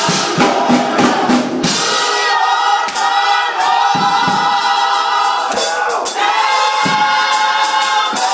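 Gospel choir singing with a drum beat under it for the first couple of seconds. The drums then drop away and the voices hold long sustained chords, with a short break and a new held chord about six seconds in.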